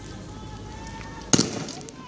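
A single sharp, loud bang about a second and a half in, with a short echoing tail, over faint shouting voices.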